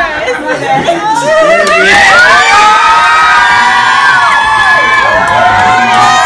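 A crowd of party guests cheering and screaming with joy, typical of the moment a marriage proposal is accepted. The cheer swells about a second and a half in, many high voices rising and holding together.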